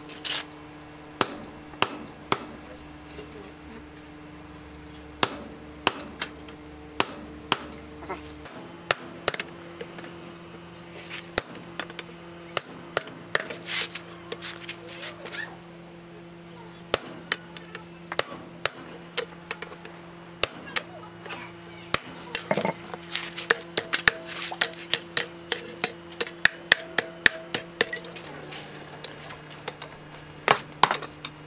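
Hammer blows on a chisel cutting through a piece of steel disc brake rotor on a steel post anvil: sharp metal strikes at an uneven pace, coming faster near the end.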